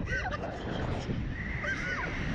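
Short, high-pitched shrieks from a rider on a Slingshot reverse-bungee ride: one right at the start and another near the end, each rising then falling in pitch. Underneath is the low rumble of wind rushing over the microphone as the capsule swings.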